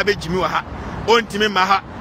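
A man speaking rapidly and continuously.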